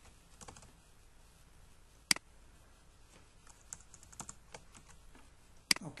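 Computer keyboard clicking: one sharp click about two seconds in, a run of lighter key taps around the fourth second, and another sharp click just before the end.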